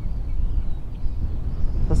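Wind buffeting the microphone: a steady low rumble over open water, with a word of speech at the very end.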